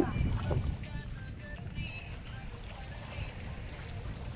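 Wind rumbling on the microphone by a calm sea, louder in the first second and then steady.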